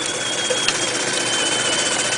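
Jensen 51 replica toy steam engine and its generators running, a steady mechanical whirr with a thin high whine that sags slightly in pitch. One light click about two-thirds of a second in.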